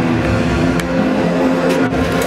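Live rock band playing loud, with electric guitar and bass holding sustained, droning chords and a few drum strokes over them.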